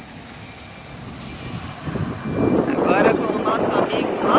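Motorhome on the move: steady road and engine noise, getting louder about two seconds in.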